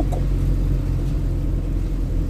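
Steady low rumble of a vehicle heard from inside a van's cabin, with a constant low hum and no sudden changes.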